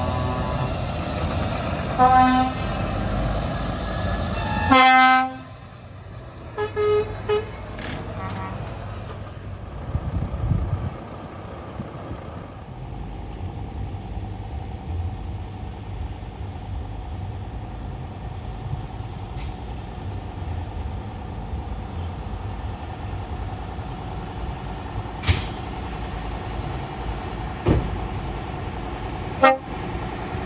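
Truck horns sounding: a short toot about two seconds in, a longer blast just before five seconds, and a few shorter toots after it. Then a lorry's diesel engine runs steadily at low speed as it drives past, with a few sharp clicks near the end.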